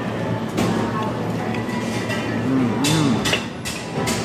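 A man's low closed-mouth "mmm" hums while chewing a mouthful of food: two short hums that rise and fall, about two and a half seconds in, over a steady background hum with a few sharp clicks.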